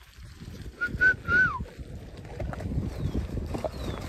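A person whistling three short notes about a second in, the last one sliding down in pitch, over the crunch of footsteps on a gravel track.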